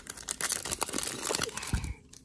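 Foil wrapper of a 2019 Topps Chrome Update baseball card pack being torn open and crinkled by hand, with a dense crackle that stops near the end. A low thump comes just before it stops.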